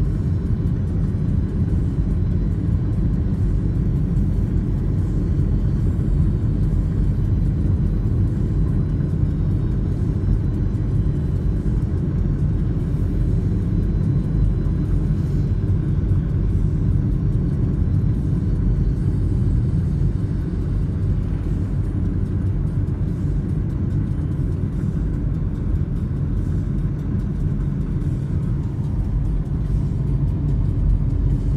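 Steady road and engine rumble heard from inside the cabin of a moving car.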